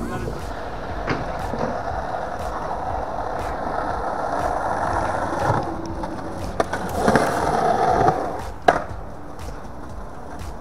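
Skateboard wheels rolling over a concrete skate park, a steady rumble that eases off about halfway and picks up again. It is broken by a few sharp clacks of the board, the loudest one near the end.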